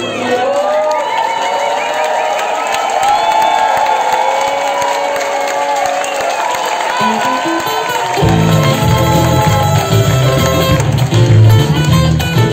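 Live band with acoustic guitars and upright bass, voices singing over a thinned-out backing with audience cheering; about eight seconds in the bass and full band come back in with strummed acoustic guitars.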